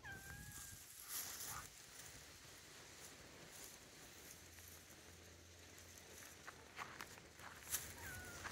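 A cat gives one short meow at the very start, then faint rustling, with a few sharp clicks near the end, the last of them the loudest thing heard.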